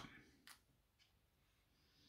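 Near silence: room tone, with two faint short clicks about half a second and a second in.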